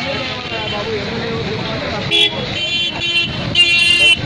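Vehicle horns honking on a busy night street: three short honks in the second half, over steady traffic noise and background voices.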